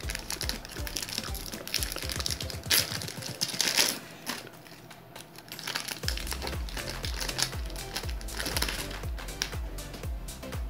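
Foil trading-card pack crinkling and tearing open, with the loudest rips about three to four seconds in, over background music with a low beat that is plainest in the second half.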